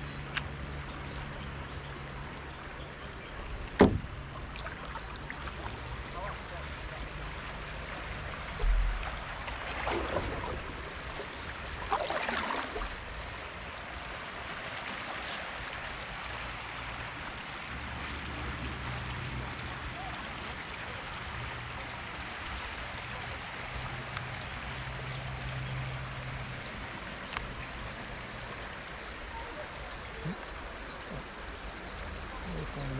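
Water lapping gently against a paddleboard on a river. A sharp click comes about four seconds in, a low thump near nine seconds, and a couple of brief swells of noise a few seconds later.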